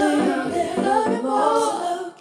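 Singing with layered vocal harmonies and no beat or bass under it, a pop vocal line winding toward the song's final note.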